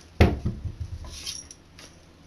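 A bathroom vanity cabinet door knocking as a cat pushes it open from inside: one sharp knock about a quarter second in, then a few lighter knocks and rattles.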